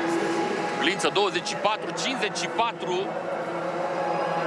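A man's voice briefly reading out a race time, over a steady background of broadcast ambience.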